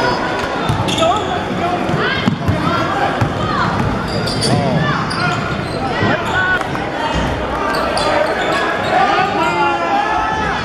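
Basketball game on a hardwood gym court: sneakers squeaking in many short chirps and the ball bouncing, over voices of players and spectators echoing in the large hall.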